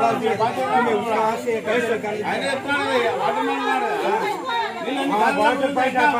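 Several people talking at once in an animated street conversation, their voices overlapping without pause.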